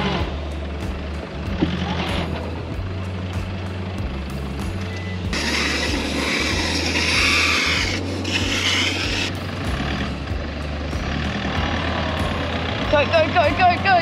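Toyota HiAce van's engine labouring as its wheels spin in soft beach sand: the van is bogged and straining to get out. A louder hissing stretch comes in the middle for a few seconds.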